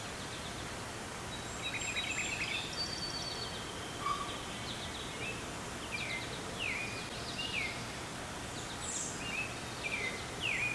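Wild birds singing over a steady background hiss: a brief trill about two seconds in, then short downward-slurring whistles repeated roughly once a second through the second half.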